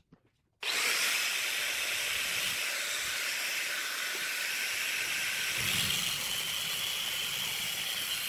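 Handheld angle grinder with a cut-off disc switched on about half a second in, running with a steady high whine. Near the end it cuts into metal clamped in a bench vise.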